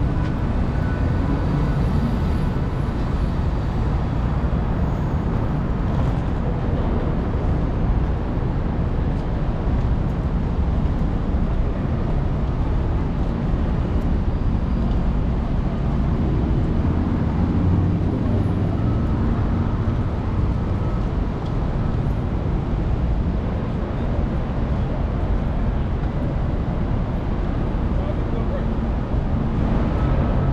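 Busy city street ambience: a steady low rumble of traffic, with people's voices in the background.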